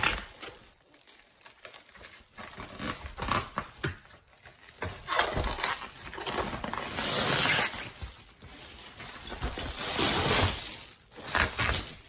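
Packaging around a car hubcap rustling and crinkling as it is unwrapped by hand, in irregular bursts that are longest and loudest in the second half.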